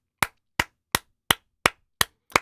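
One person's slow hand claps, evenly spaced at about three a second: a deliberate round of applause.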